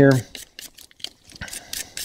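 A small gun-cleaning brush scrubbing AR-15 bolt carrier parts, starting about half a second in as a series of short, faint, scratchy strokes. It is loosening carbon fouling that a cleaner foam has softened.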